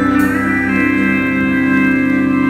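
Live indie rock band in an instrumental stretch, guitars holding long, sustained chords, with a small slide upward in pitch early on.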